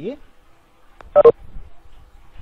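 A short, loud two-note electronic beep about a second in, the second note lower, just after a faint click: a video-meeting alert sounding as a participant joins the call.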